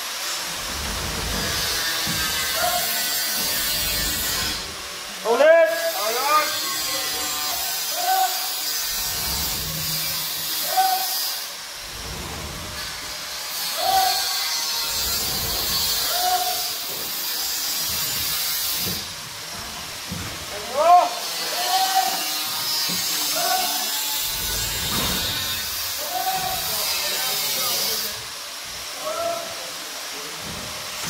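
Armoured power cable being hauled up a steel cable ladder: a scraping hiss in long pulls of several seconds each, with short breaks between pulls.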